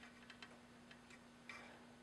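Near silence: room tone with a faint steady low hum and a few faint ticks, two close together early and one about a second and a half in.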